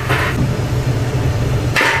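Steady low mechanical hum of a running air-conditioning unit, with a faint hiss. There is a short breathy hiss at the start and another near the end.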